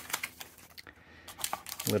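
Packaging being handled in a small cardboard box: a run of small crinkles and clicks as a paper desiccant packet is pulled out from the foam insert.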